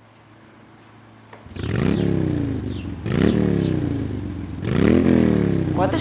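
An engine revved three times in a row, each rev climbing quickly and then dying away, after a quiet first second and a half.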